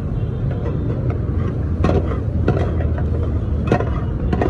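Steel ladle scraping and knocking against a steel pan as a runny egg mixture with chopped vegetables is stirred, with a few sharp knocks in the second half. A steady low rumble runs underneath.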